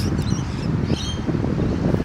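Wind buffeting the microphone, a loud, uneven low rumble, with a faint high chirp about a second in.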